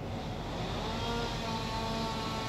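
A motor running with a steady pitched hum, coming in about half a second in and growing louder.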